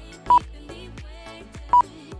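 Background music with a steady beat, cut through by two short, loud electronic beeps about a second and a half apart: the lap-timing system's beep as a car crosses the timing line.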